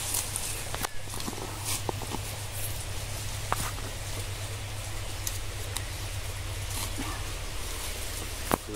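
A small hand digging tool working into soil and leaf litter, giving a few scattered short scrapes and knocks.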